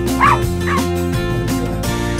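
Small dog giving two short high yips, the first the louder, over background music.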